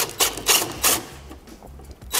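Cordless drill driving a self-tapping sheet metal screw into a truck's body panel, in about four short bursts during the first second, then quieter.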